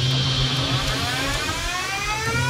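Atlas humanoid robot powering up: a steady low hum with a whine that rises steadily in pitch as its hydraulic pump spins up.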